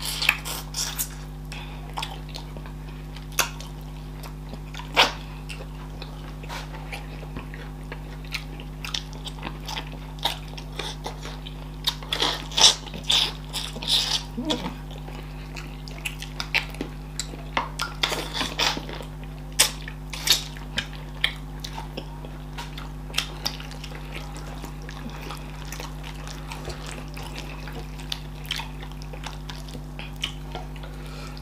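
Close-miked chewing and wet mouth sounds of people eating fufu, okra soup and chicken by hand: a scatter of short sharp clicks and smacks, busiest in two spells near the middle, over a low steady hum.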